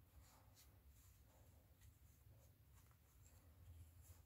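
Near silence: faint rustling and light scratching of polyester fibre stuffing being pulled apart by hand and pushed into a small crocheted toy with the back of a crochet hook.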